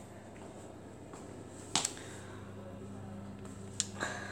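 Two short sharp clicks a couple of seconds apart, the first the louder, over a low steady hum.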